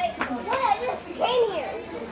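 Children's voices calling out: three high-pitched calls in quick succession, then only faint chatter near the end.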